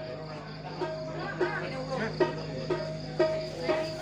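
Sparse sound-check playing through a PA: scattered short keyboard notes and light drum taps, over a steady low electrical hum and a steady high-pitched hum.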